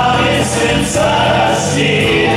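Live band music from electric guitars and keyboard, with a sustained choir-like vocal part held over the band.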